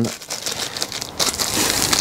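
Plastic packaging crinkling as it is handled, a dense crackle that grows louder in the second half.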